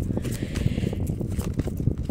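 A deck of oracle cards being shuffled by hand: a rapid, irregular patter of soft card-on-card flicks and taps.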